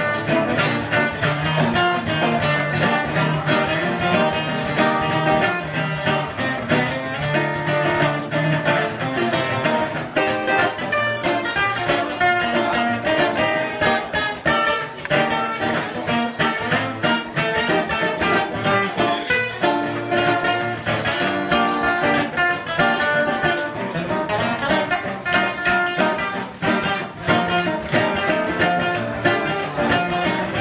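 Acoustic guitar playing an instrumental swing jazz solo, a steady stream of plucked notes.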